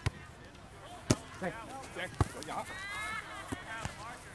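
A volleyball being struck by players' hands and arms in a rally: three sharp slaps about a second apart, then a fainter one near the end, with voices calling in between.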